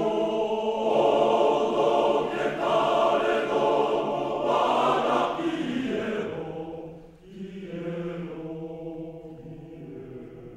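Male voice choir singing unaccompanied, full and loud for about six seconds, then a brief break and softer held chords that fade away.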